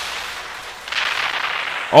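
A rushing, crackling hiss from the anime episode's soundtrack, a sound effect with no voice or tune in it, which grows louder about a second in.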